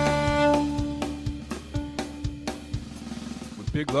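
Fiddle holding long bowed notes over a steady drum kit beat of about two hits a second; the held notes fade out and the drums carry on before a voice comes in just at the end.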